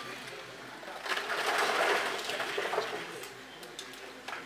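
Casino chips being handled by a roulette dealer: a sliding, rustling clatter that swells about a second in and fades out by three seconds, with a few light clicks near the end.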